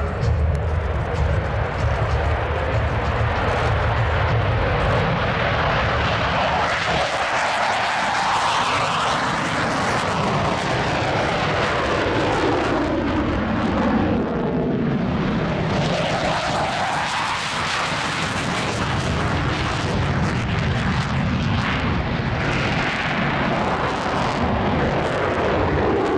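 Loud, continuous jet-engine noise from F/A-18 Hornet fighters taking off and climbing out. The noise is heavy and low at first, then sweeps up and down in pitch as the jets pass and pull away.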